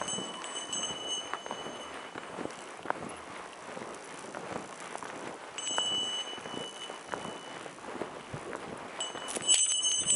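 Footsteps of two dogs and a walker plodding through deep snow, a run of irregular soft crunches. A high metallic ring sounds three times, at the start, in the middle and near the end, each lasting about two seconds.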